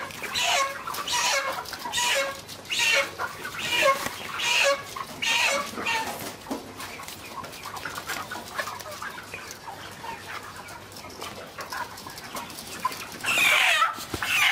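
A flock of Ross 308 broiler chickens clucking, with short calls following each other about twice a second, loudest in the first half and softer after that. A louder, harsher burst comes near the end.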